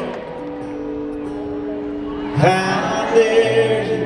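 Live performance of a slow country ballad with acoustic guitar: steady held accompaniment notes, then a man starts singing a line about two and a half seconds in.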